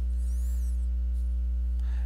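Steady electrical hum, a low mains-frequency drone with a faint buzz of higher overtones, holding level without change.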